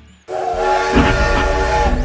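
Toy steam train's sound effect: a steam hiss with a steady whistle tone, starting suddenly about a quarter second in.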